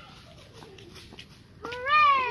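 A child's high-pitched, wordless yell that starts near the end, rising and then falling in pitch, over faint background noise.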